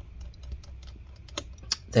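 A few light clicks and taps of a small screwdriver and screw being handled as the single screw holding a laptop's M.2 SSD is taken out, with two sharper clicks about one and a half seconds in.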